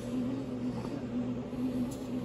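Pohl Schmitt bread machine's motor running steadily as its paddle kneads a ball of dough, a low hum that wavers slightly in pitch.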